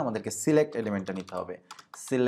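Typing on a computer keyboard, a run of quick key clicks, with a man talking over most of it.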